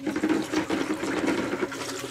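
Water sloshing and swirling in a plastic bucket as a PVC pipe stirs about three and a half gallons of hydroponic nutrient solution to mix in the added nutrients.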